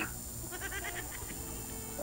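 A faint, brief, wavering voice-like sound in the background, about half a second in, over a steady low hum on the call line.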